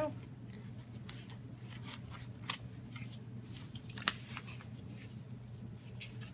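Scissors cutting a hole through card stock, the blades snipping and twisting into the card in a scatter of short, irregular clicks.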